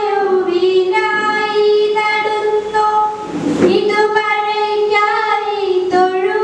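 A girl singing a poem solo in long, drawn-out notes, with a short break for breath about three and a half seconds in.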